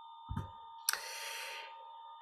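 A pause on a video-call audio line with faint steady electronic tones running through it, a soft low thump, then a click about a second in followed by a short hiss like a breath.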